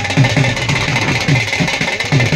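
A drum beaten in a fast, steady rhythm of about five low strokes a second, each stroke dropping slightly in pitch.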